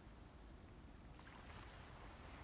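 Near silence: faint outdoor ambience with a low, steady rumble.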